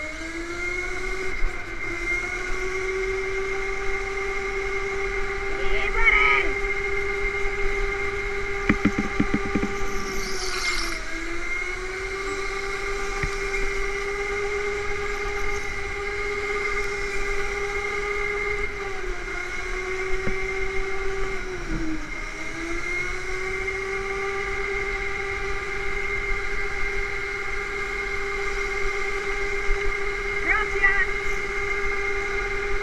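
Indoor go-kart's electric motor whining at a steady high pitch at speed, dipping briefly in pitch three times as the driver eases off for corners.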